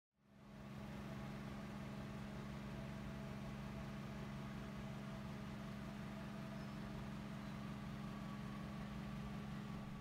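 A steady low hum with two low tones, fading in during the first second and holding unchanged.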